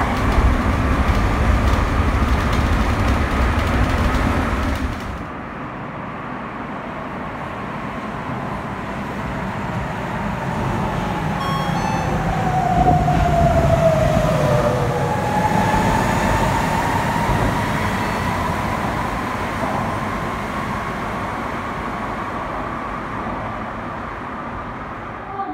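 Sapporo Namboku Line rubber-tyred subway train running: a heavy rumble that drops away abruptly about five seconds in, then a motor whine that slides down in pitch and later rises again.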